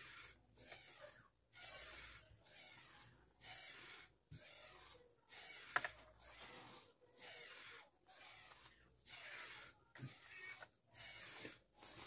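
Near silence: a faint hiss that keeps cutting in and out about once a second, with one light click near the middle.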